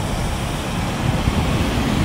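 A white cargo van driving past close by through the intersection: a steady engine and tyre noise that swells a little about halfway through, with wind rumbling on the microphone.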